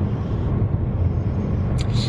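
Steady road and engine rumble inside a moving car's cabin, low and even throughout.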